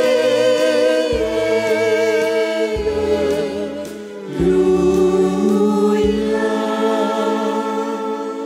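Choir singing a slow sacred hymn in long held notes over an instrumental accompaniment whose bass notes change about every second and a half, dipping briefly about halfway before swelling again.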